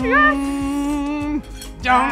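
A person's long, drawn-out exclamation of "yes", held on one steady note for over a second and then breaking off.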